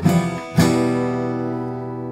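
Epiphone Hummingbird steel-string acoustic guitar: one chord strummed about half a second in, then left to ring and slowly fade.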